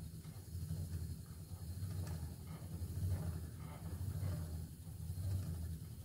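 Wooden treadle spinning wheel turning steadily while fibre is spun: a faint whirr with soft swells about once a second, over a low steady hum.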